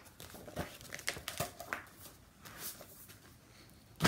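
Paper rustling and crackling in short irregular bursts as sheet music and book pages are handled and leafed through.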